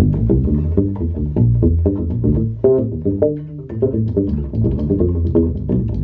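Skjold Greyling passive four-string electric bass played fingerstyle: a quick, busy line of short plucked notes, several a second.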